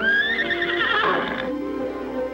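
A horse whinnying once, a long high call that rises and then breaks into a quavering trill, over background music with sustained notes.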